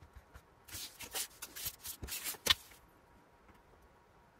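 Sheet of patterned paper and a clear plastic ruler being slid and repositioned on a cutting mat: about two seconds of paper rustling and scraping, ending in a sharp tap about two and a half seconds in.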